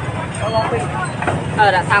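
People talking over a steady low rumble of street traffic.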